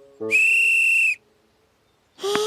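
A plastic referee's whistle blown once: a single steady, high-pitched blast lasting under a second, in a cartoon soundtrack.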